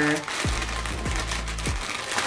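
Crinkling of a clear plastic bag as hands pull open a packaged fluffy duster, with soft background music underneath.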